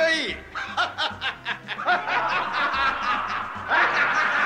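A man's mocking laugh, a quick run of short snickers, as part of a line of anime dialogue.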